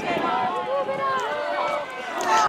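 Several distant voices calling out across the football pitch, overlapping and wavering: the live sound of players and spectators during the match.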